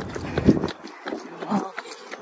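A runner's footsteps on a paved road and her heavy breathing while running, with two louder breaths about a second apart.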